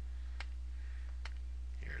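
Two sharp clicks about a second apart over a steady low electrical hum.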